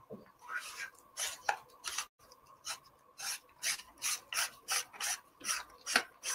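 Metal lens rings being screwed onto the front filter thread of a camera lens by hand. The threads give a run of short rasping scrapes, about three a second, with a brief pause a little over two seconds in.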